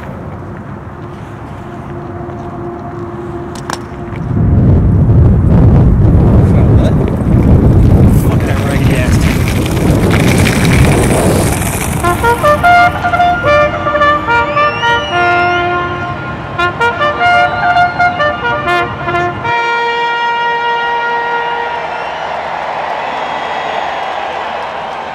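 A large crowd roaring and cheering. Over it a brass bugle plays a quick call of short, clipped notes, which ends on longer held notes.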